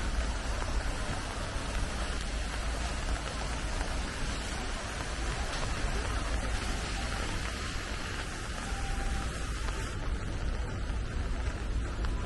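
Steady rain falling on wet paving, an even hiss with no breaks.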